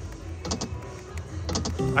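Video slot machine spinning its reels: a few short clicks and ticks over the machine's game music and a steady low hum.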